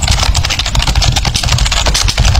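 A loud, steady motor-like rumble with a fast, even rattle.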